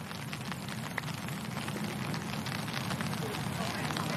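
Golf-course ambience: a low murmur of spectators over a crackly background hiss, with a faint click about a second in, typical of a wedge striking the ball on a chip shot.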